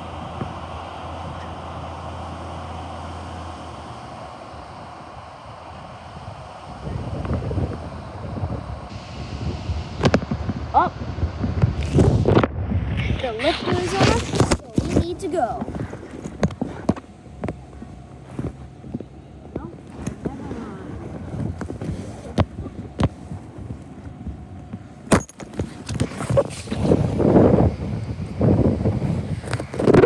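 A garbage truck's engine runs steadily for the first few seconds. Then loud, irregular rustling and knocks of the phone being handled and carried take over.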